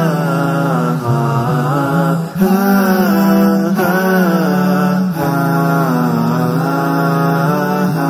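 Chanted vocal music: a voice singing long, winding melodic lines over a steady low drone, with short breaks between phrases.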